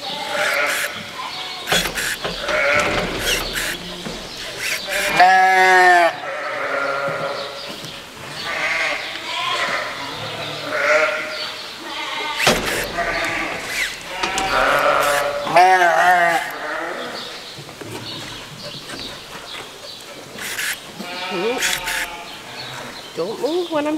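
Sheep bleating again and again, with two loud wavering bleats about five seconds in and again around fifteen seconds. Short sharp clicks are scattered between the calls.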